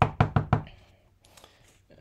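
A clear acrylic-mounted rubber stamp being dabbed onto an ink pad to ink it: a quick run of about six light knocks in the first half second, fading away.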